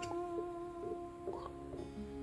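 Acoustic guitar music: a held note rings out and slowly fades, with a few soft plucked notes over it.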